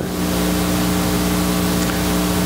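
A steady, unchanging hum with a hiss over it, as loud as the speech around it.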